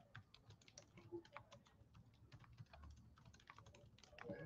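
Faint typing on a computer keyboard: a quick, irregular run of key clicks as a sentence is typed out.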